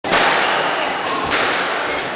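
Squash rally: a dull thud of the ball being struck about a second in, over a steady loud hiss.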